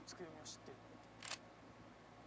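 Near silence on a microphone line: a low steady hum with a few brief faint hisses, the sharpest a click-like noise about a second and a quarter in.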